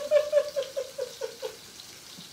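A person laughing in a quick run of short pulses, about five a second, that dies away about a second and a half in.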